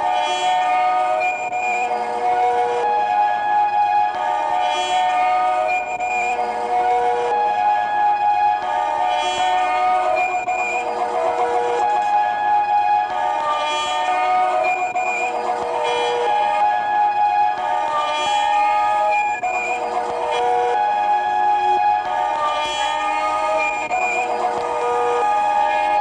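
Electroacoustic tape-loop piece: several held, horn-like tones overlap in dense layers and recur in a cycle of about two and a half seconds, over a faint low rumble.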